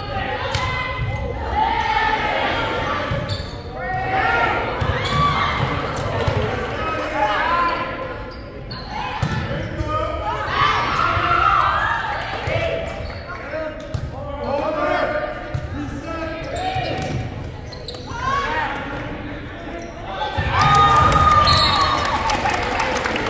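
Players' and spectators' voices calling out and echoing in a large gymnasium during a volleyball rally, with scattered sharp hits and bounces of the ball. The voices grow louder near the end.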